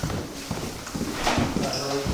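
Footsteps going down an indoor staircase: a run of irregular hollow knocks of shoes on the stair treads, with voices in the background near the end.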